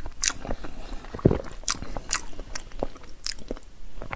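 Close-miked chewing and wet mouth sounds of a person eating soft raw salmon rolls, a scatter of short smacks and clicks. One louder low knock comes a little over a second in.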